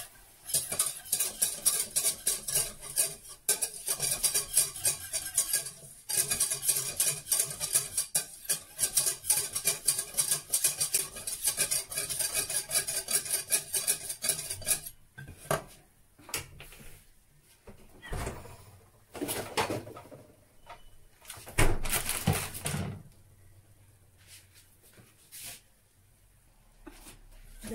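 Metal balloon whisk beating fast against a stainless steel saucepan, a rapid clatter of wire on steel as flour is whisked into a paste for a white sauce. About halfway through the rapid whisking stops, giving way to slower scrapes and a few louder knocks against the pan.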